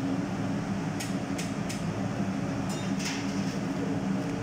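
A steady low machine hum, with a few short scrapes of a kitchen knife working inside a long green chilli against a plastic cutting board as the seeds are cleaned out: three about a second in, then a rougher run near three seconds.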